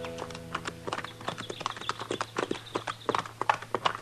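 Radio-drama sound effect of horses' hooves clopping in a quick, uneven string of knocks. The last held notes of a guitar music bridge fade out in the first second.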